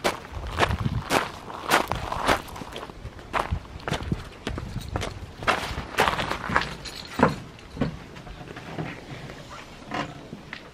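Footsteps crunching on loose pebble gravel, walked in sandals at about two steps a second, growing softer near the end.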